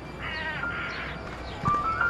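Short, pitched animal calls in the first half, followed by a music melody that begins near the end.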